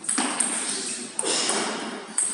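A table tennis ball clicking sharply about four times as it strikes bats, table and floor, echoing in a large hall.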